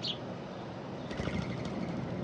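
A small bird, likely a house sparrow, gives a short chirp that falls in pitch right at the start. A little over a second in come a few faint ticks and chirps, all over a steady low background rumble.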